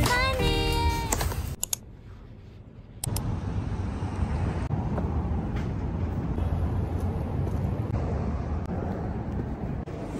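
Background music ends about a second in. After a short lull, a steady low rumble of outdoor background noise starts about three seconds in, with a few faint clicks through it.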